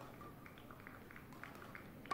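Quiet sports-hall ambience with a scatter of short, faint high squeaks from court shoes on badminton mats.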